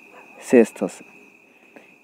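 A cricket trilling steadily on one high pitch, with a brief spoken syllable or two over it about half a second in.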